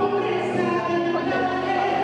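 A church choir singing a worship song over instrumental accompaniment with a steady bass line.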